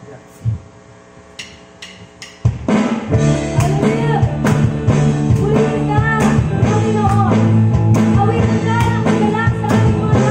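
A few sharp clicks, then about two and a half seconds in a band comes in together: electric bass, electric guitar and drums playing a praise-and-worship song at a steady beat.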